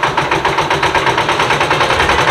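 Concrete mixer's engine running steadily, with a loud, fast, even pulsing beat.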